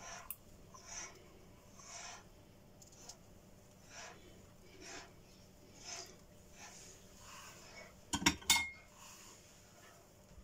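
Quiet kitchen handling of utensils over a pot of marinade: soft scrapes about once a second, then a short clatter of clinks a little after eight seconds, the loudest sound.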